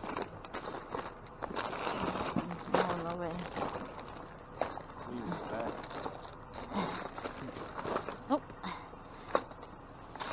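Plastic candy wrappers and bags rustling and crinkling as hands rummage through packaged Christmas candy, with scattered sharp crackles.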